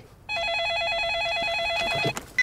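Electronic telephone ringing: a single steady ring made of a fast two-note warbling trill. It starts about a third of a second in.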